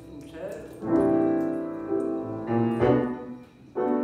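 Piano played in slow, sustained chords, each struck and left to ring, with a new chord roughly every second from about a second in.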